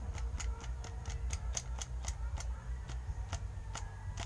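Quick sharp clicking, about four or five clicks a second and then sparser near the end, as a small red-lidded plastic container holding rolled paper slips is shaken for a draw. A steady low hum runs underneath.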